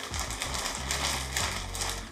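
Clear plastic packaging bag crinkling and rustling as chair parts are pulled out of it.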